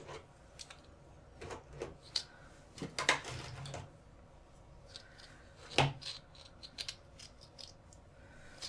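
Face-paint supplies being handled: scattered clicks, taps and short scratchy rubs, loudest about three seconds in and again just before six seconds.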